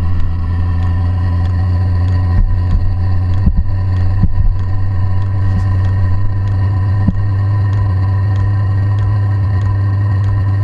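Chinese 8 kW all-in-one diesel parking heater running in its start-up phase: a loud, steady low hum from its fan and burner. From about halfway through there are faint regular ticks about twice a second, from its fuel dosing pump.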